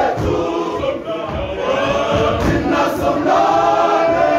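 Male voice choir singing in harmony, several voice parts holding notes together.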